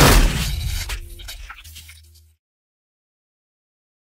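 Logo sting sound effect for a glitching animated logo: a sudden loud burst with crackling glitch noise that dies away over about two seconds, under a low hum that cuts off suddenly.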